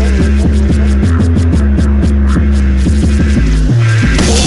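Drum and bass track in a stripped-down passage: a deep, sustained bass line throbs under quick, evenly spaced hi-hat ticks. Near the end the bass jumps to a higher note.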